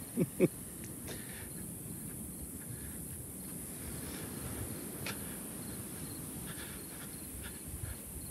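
A man's short laugh right at the start, then faint insects chirping in short, repeated high pulses over a low, steady outdoor rumble.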